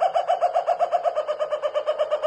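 A high, rapid staccato cackle, a spooky laugh of about a dozen even pulses a second, its pitch sinking slightly as it goes.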